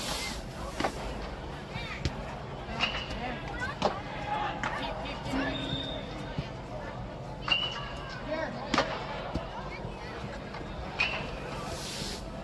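Soccer ball being kicked on artificial turf in an indoor dome, several sharp thuds scattered through the clip. Players and spectators are calling out over a steady background hubbub.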